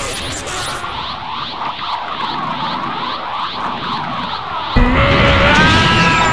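Anime power-up sound effect: a repeating, swirling whoosh of charging energy. Near the end it breaks into a sudden louder burst with a held, strained shout.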